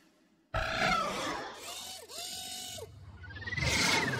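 Animated robot sound effects: after a short silence, mechanical clattering and whirring start suddenly, with sliding electronic tones and a whistle-like glide that rises and falls near the end.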